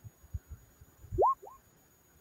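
Two quick rising chirps, the second shorter and fainter, preceded by a few soft low thumps.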